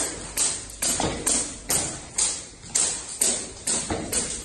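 A regular series of sharp slapping impacts, about two a second, from strikes in a karate tyre conditioning drill.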